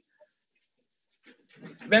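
Dead silence on a video-call audio line while a man pauses between phrases. Near the end there is a faint breath and he resumes speaking.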